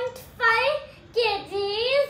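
A young child's high voice in drawn-out, sing-song phrases, the last one rising in pitch.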